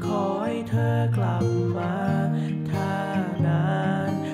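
A man singing a Thai pop song in cover, accompanied by strummed acoustic guitar.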